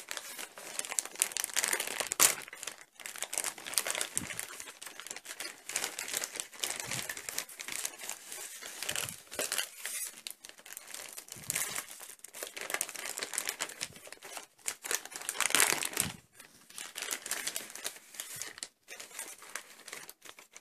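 Shiny plastic surprise bag crinkling and tearing as it is ripped open and rummaged through, with paper sticker sheets and leaflets rustling as they are pulled out and shuffled. Loudest crackles about two seconds in and again around fifteen seconds.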